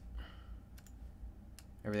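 A few faint, sharp computer mouse clicks spaced irregularly, as a colour picker is opened and a colour set in software.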